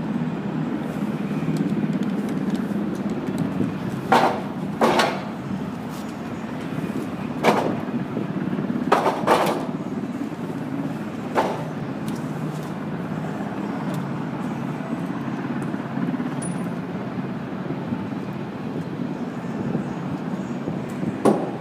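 Heavy timber boards knocking and clunking as they are handled and set in place: six sharp knocks, several in quick pairs, in the first half, over a steady low rumble.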